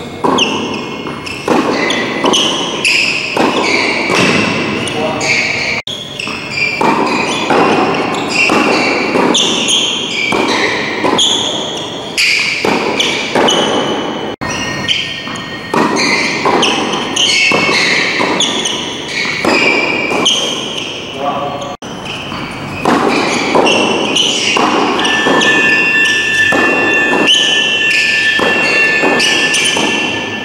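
Tennis rally in a large indoor hall: racquet strikes and ball bounces on the court, heard with the hall's echo, over a person's voice.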